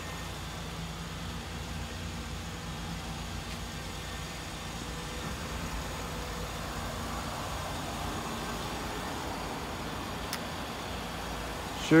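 Steady low hum of an idling car engine, with one faint click about ten seconds in.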